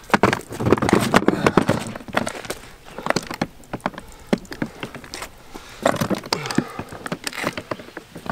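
A wet Pelican Vault V770 hard rifle case being hauled out of the water onto rock: water splashing and running off it, with a rapid run of knocks and scrapes of the case on stone in the first two seconds. Sparser knocks follow, then a cluster of clicks from its latches being worked near the end.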